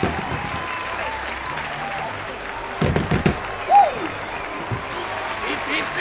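Crowd applauding and cheering, with scattered whoops; a short cluster of knocks about three seconds in.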